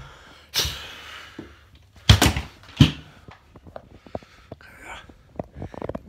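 Handling noise: a short rush, then two loud knocks a little after two seconds in, followed by a run of smaller clicks and knocks.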